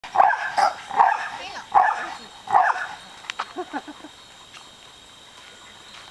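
A pit bull barking four times in quick succession, then a few fainter short sounds.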